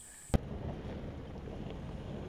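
A sharp click about a third of a second in, then the steady low rumble of a vehicle driving along a rough dirt track, with wind on the microphone.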